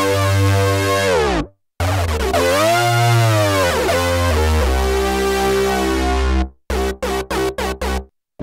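iTuttle software synthesizer on an iPad playing its 'Hard Lead' preset: a sustained lead line that slides down in pitch about a second in, then bends up and back down. It holds one steady note, then plays a run of short detached notes near the end.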